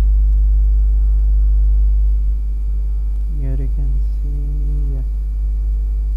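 Loud, steady low electrical hum (mains hum) on the recording, with a ladder of faint steady higher tones above it. About halfway through, a voice speaks briefly and indistinctly.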